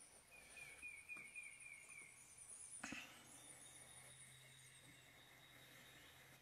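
Near silence, with faint high-pitched wavering trills and one soft click about three seconds in.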